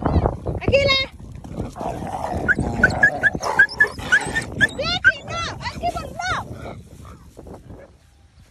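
A dog giving a quick run of short, high-pitched yelps and whines, fading toward the end, with a person's voice at the start.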